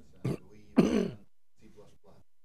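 A person clearing their throat in two short bursts, the second louder and longer.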